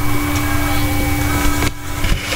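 Steady background hum and hiss picked up by the microphone, with a constant low tone. It dips briefly near the end.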